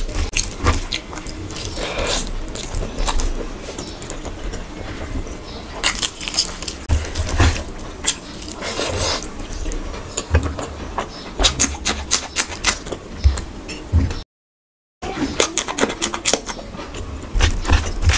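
Close-miked eating sounds: fingers squishing and mixing basmati rice with curry on a plate, with chewing and small clicks and smacks. The sound drops out to dead silence for under a second about fourteen seconds in.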